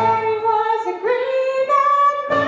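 A female vocalist singing a show tune with a live band, her voice holding one long note through the second half while the band plays lightly underneath.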